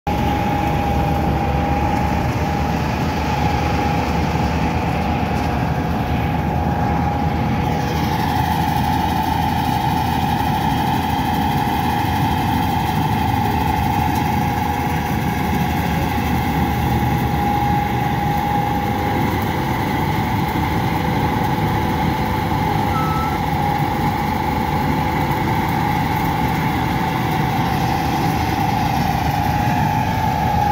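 Combine harvester running steadily while cutting paddy, with a constant whine over the engine noise. About eight seconds in, the higher tones slide down and then hold steady.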